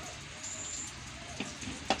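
Steady low background hiss, with a couple of faint clicks near the end.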